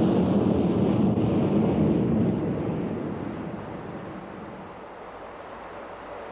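Jet engines of a Boeing 747 freighter at takeoff power, a steady low rumbling noise that fades down over the second half.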